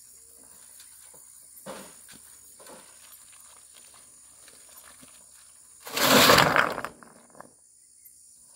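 A wheelbarrow load of rough stones tipped out onto a dirt road about six seconds in: a loud clattering rush of rocks lasting about a second. Before it, only faint scattered scrapes as the loaded barrow is pushed along.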